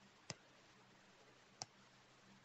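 Two short, sharp clicks about a second and a half apart, over near silence.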